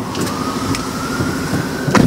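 Steady vehicle and street noise heard inside a parked car's cabin, with a faint whine rising slowly in pitch through it.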